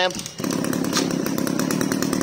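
Small 25 cc two-stroke brush cutter engine running steadily. Its sound drops away briefly just after the start, then settles back to an even running note.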